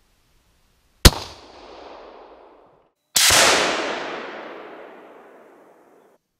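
.243 hunting rifle fired twice, about two seconds apart. Each sharp report is followed by a rolling echo that fades over a second or two, and the second shot's echo runs longer.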